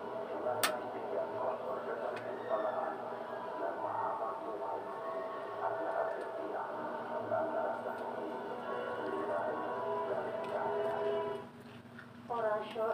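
Music with voices playing in the background at a steady level, dropping away shortly before the end.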